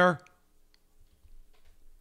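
A few faint computer mouse clicks in a quiet small room with a faint steady hum, after the end of a spoken word.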